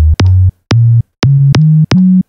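Synthesized sine-wave kick drum from the Kick Ninja plugin played as about five short notes climbing in pitch. Each note has the same sharp click at its start, then a steady tone whose pitch steps higher with each note, because the last node of the pitch envelope follows the key played while the attack stays fixed.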